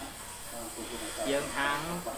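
Steady background hiss from the recording during a pause of about a second in a man's lecture, then his speech resumes.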